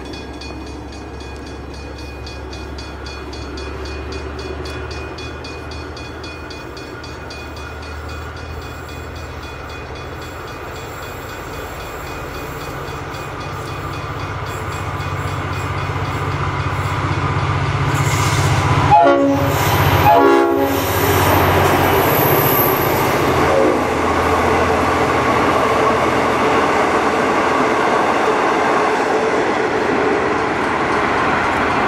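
Diesel-hauled passenger train approaching and passing at speed. A steady engine rumble grows louder, two short horn blasts sound about two-thirds of the way in, and then loud wheel and rail noise follows as it goes by.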